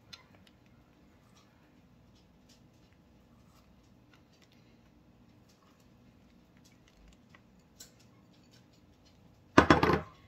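Mostly very quiet, with a few faint ticks as chopped pecans are sprinkled onto batter. Near the end comes one short, loud knock of a small glass bowl being set down on a granite countertop.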